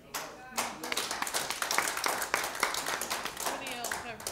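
Congregation applauding, a dense run of clapping that starts about half a second in and thins out near the end, with voices calling out over it at the start and near the end.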